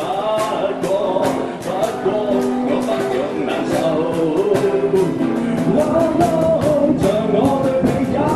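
Live amplified acoustic busking: a male voice singing a Cantonese pop song over strummed acoustic guitar, with a cajón keeping a steady beat.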